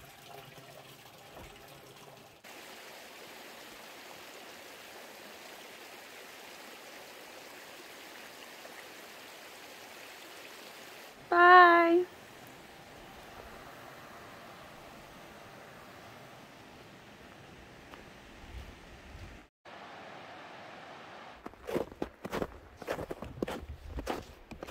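Faint, steady running water from the hot springs, with one short, wavering voiced call from a person a little after eleven seconds in. Near the end, a run of irregular footsteps on snow.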